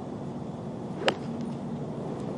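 A golf club strikes the ball on a full approach shot from the fairway: one sharp, short crack about a second in.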